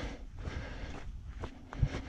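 Running footsteps: irregular soft footfalls over a low steady rumble from the handheld camera's microphone, with a heavier thump near the end.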